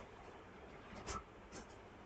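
Quiet room with a few faint, short scuffing sounds about a second in.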